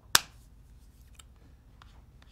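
A single sharp snap just after the start, followed by a few faint clicks from laptop keys or a trackpad.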